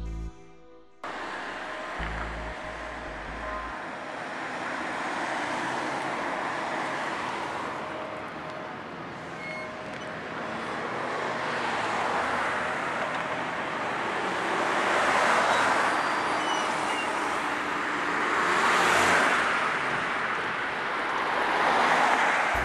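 Road traffic: cars passing on a town street, an even tyre-and-engine hiss that swells as vehicles go by, once about two-thirds of the way in and again a few seconds later.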